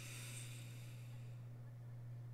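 A steady low hum, with a faint hiss on top that fades out over the first second and a half.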